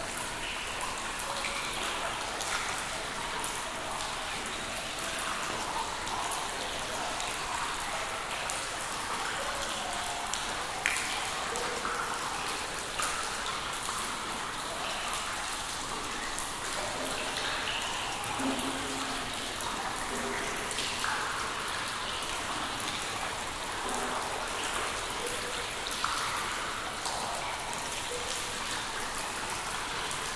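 Water drops falling in a cave: a dense, steady patter of drips with frequent short pitched plinks of drops landing in water.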